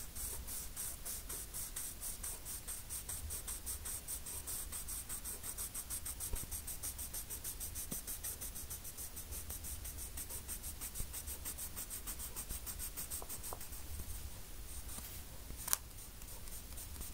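Rapid back-and-forth shading strokes of a drawing tool on paper, several strokes a second in a steady scratchy rhythm, while the clothing of a portrait is coloured in. A single sharper click comes near the end.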